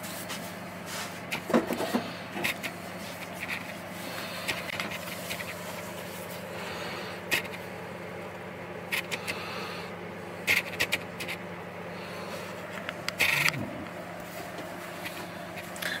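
Small scissors snipping the leathery shell of a ball python egg and gloved hands handling the egg, heard as scattered soft clicks and brief scrapes and rustles. A steady low hum runs underneath.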